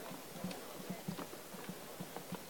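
Footsteps of a crowd moving about on a hard floor: irregular soft knocks and heel clicks, several a second.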